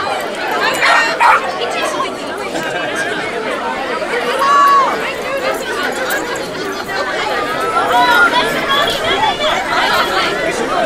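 Crowd of spectators chattering: many overlapping voices at once, with no single speaker standing out.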